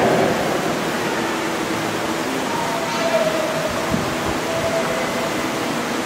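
Steady background hiss in a church during a pause in the priest's speech, with faint, indistinct voices in the middle of the stretch.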